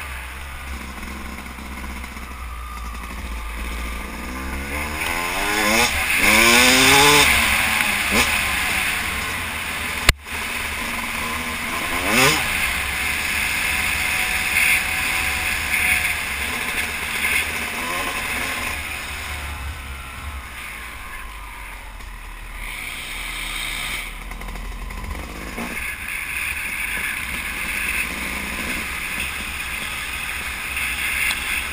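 Yamaha YZ250 two-stroke dirt bike engine running under the rider along a trail, with wind and road noise on the microphone. About six to eight seconds in it revs up hard, its pitch climbing in several steps through the gears, and it pulls up again briefly near twelve seconds. A single sharp knock comes about ten seconds in.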